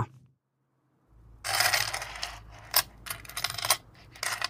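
Coins jingling and being counted out: a handful of coins shuffled together, then several coins set down one after another with short metallic clinks.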